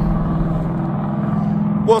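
Steady low motor hum with a faint noise haze, like an engine or traffic running in the background, outdoors; a man's voice starts right at the end.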